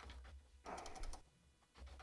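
Computer keyboard being typed on: a few scattered, faint key clicks.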